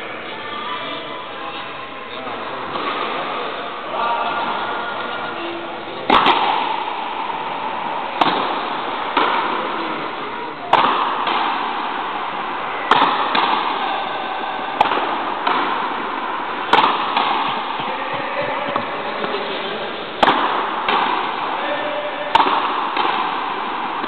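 A frontenis rally: the hard rubber ball is cracked by tennis-style rackets and slams against the fronton wall, with a sharp impact about every two seconds from about a quarter of the way in. Each crack echoes briefly in the large court.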